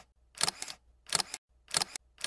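Camera-shutter sound effect clicking repeatedly. Three double clicks come a little over half a second apart, with silence between them.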